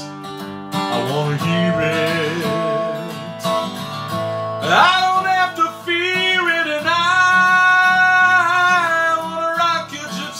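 Acoustic guitar backing track playing. About five seconds in, a man's voice slides up and holds long notes over it.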